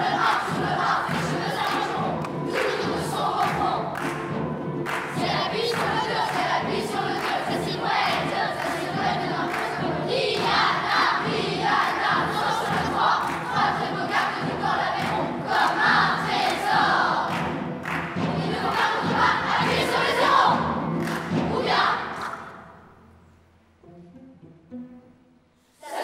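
A large children's chorus shouting and chanting together in surges over a sustained instrumental backing with percussive hits; it dies away about 22 seconds in.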